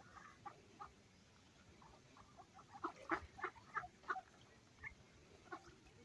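Mallard ducks quacking on the water. A few soft calls come first, then a run of about five louder quacks, roughly three a second, around three to four seconds in, then a few scattered calls near the end.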